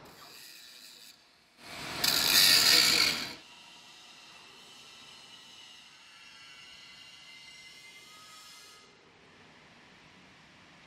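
Factory workshop noise: a loud, harsh mechanical burst from a tool starts about two seconds in and lasts a second and a half. After it comes a faint, steady machine noise with thin high tones, which fades near the end.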